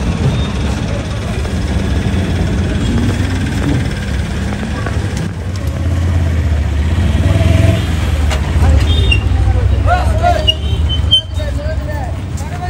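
Low, steady rumble of motor vehicle engines running, with people's voices calling out near the end.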